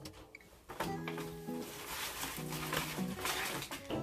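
Soft background music of sustained chords that change about once a second, under faint crinkling of a plastic packet being handled.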